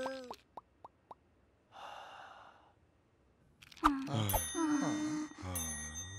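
Cartoon sound effects: a few soft clicks, a brief hiss, a pause, then wordless cartoon-character voices with a metal triangle ringing under them in the second half.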